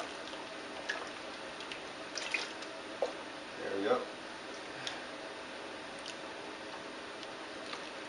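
Wort dripping and splashing faintly as a cup is dipped into and lifted from a plastic fermenting bucket, with a few small clicks.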